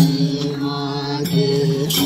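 Group of voices singing a Sorathi folk song in long, held, chant-like notes, the pitch shifting about halfway through, with a couple of madal hand-drum strokes.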